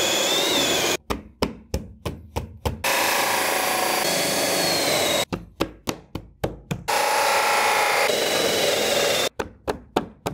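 Cordless drill with a bi-metal hole saw cutting holes through WPC composite deck boards, with a vacuum running alongside, heard in three steady stretches. Between them come quick runs of sharp knocks, about four a second, as the recessed floor lights are pressed and tapped down into the fresh holes.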